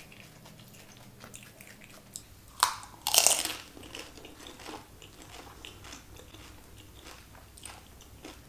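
Close-up eating sounds of a crisp pani puri (golgappa) shell being bitten: a sharp crunch about two and a half seconds in, then a longer, louder crunch. Quieter chewing with small clicks follows.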